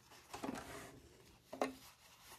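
Faint handling sounds of an overlocker's tension dials being turned back to their factory setting of 4, with two brief faint knocks, one about half a second in and one about a second and a half in.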